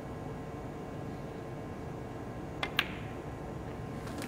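Snooker cue tip striking the cue ball, followed a split second later by a sharper, louder click as the cue ball hits a red, over the low hush of a quiet arena.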